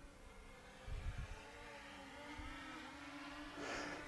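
Faint steady buzz of a DJI Mini 2 drone's propellers, slowly growing louder as the drone flies back in on its boomerang shot, with low wind rumble on the microphone about a second in.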